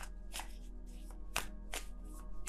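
Soft background music with faint steady tones, under three short sharp clicks or taps.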